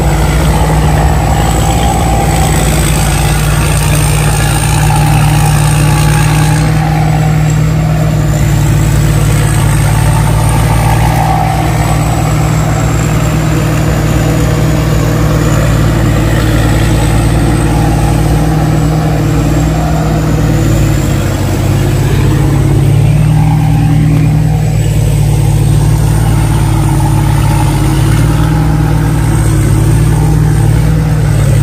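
Engine of a 270 hp tracked rice combine harvester built by P. Charoen Phatthana, running steadily under load as it crawls and harvests through deep mud, with a thin high whine above the engine that wavers slightly in pitch.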